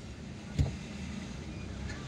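Low, steady rumble of the car's engine and traffic heard from inside the cabin while crawling in slow city traffic, with a single brief thump a little over half a second in.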